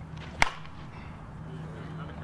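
Softball bat hitting a tossed ball once, about half a second in: a single sharp crack with a brief ringing ping.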